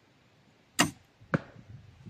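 Doom Armageddon crossbow firing a 20-inch bolt: a sharp crack as the string is released, then a second, shorter crack about half a second later as the bolt strikes the distant target.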